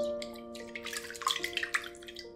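A spatula stirring yeast into warm water in a glass bowl: light splashing and sloshing with small clicks, under background music with held notes.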